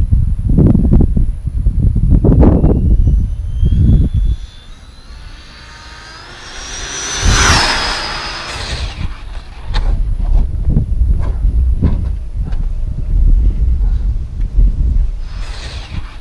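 Brushless electric motor of an Arrma Infraction V2 RC car running on 6S: a high whine that climbs in pitch as the car accelerates, peaks about halfway through and then drops away as it passes. Low rumbling noise comes and goes around it.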